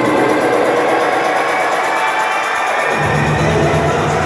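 Electronic dance music from a live DJ set over a concert sound system, heard from within the crowd. The bass is thinned out at first, then comes back in strongly about three seconds in.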